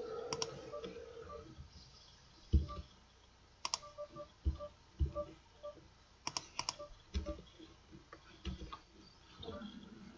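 Scattered computer mouse and keyboard clicks, irregular, with a few dull low thumps in between.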